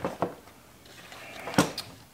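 Sharp plastic clicks and knocks as a tight rubber dampener plug is forced into a Stihl 180 chainsaw's handle without seating: two clicks right at the start, then the loudest knock about one and a half seconds in with a smaller one just after.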